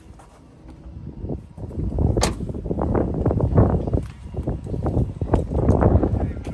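Wind buffeting and handling rumble on the camera's microphone while it is carried along the truck. The rumble swells loud about a second and a half in, and there is one sharp click just after two seconds.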